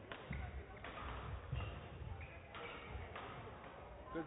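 Sports-hall background: indistinct voices with occasional soft thuds over a steady low rumble.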